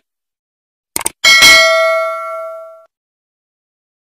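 Subscribe-button animation sound effect: two quick clicks about a second in, followed at once by a bright notification-bell ding that rings on and fades away over about a second and a half.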